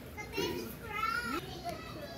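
Young children's voices at play in the background: two short, high-pitched calls about a second apart.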